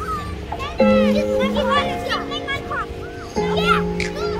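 Children's high voices calling out and chattering as they play, over background music of held chords that change about a second in and again near the end.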